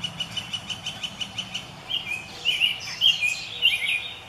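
Birdsong: a quick run of repeated high chirps, about five a second, for the first two seconds, then more varied warbling notes.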